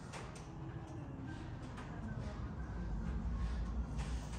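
Low, steady rumble of room tone with handling noise from a handheld phone microphone as it is moved around.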